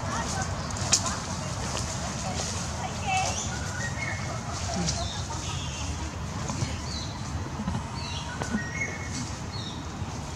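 Scattered short bird chirps over a steady low rumble, with a few sharp crackles of dry leaves, the loudest about a second in, as a macaque shifts on the leaf litter.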